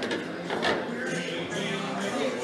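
Bar background music and voices, with sharp clacks of pool balls knocking together, the loudest about half a second in.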